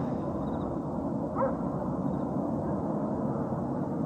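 Steady low background noise, with a short rising chirp about a second and a half in.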